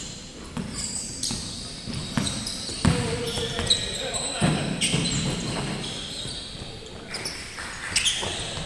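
A basketball bouncing on a hardwood gym floor with repeated sharp thuds, and sneakers giving short, high squeaks. The sound echoes in a large indoor hall.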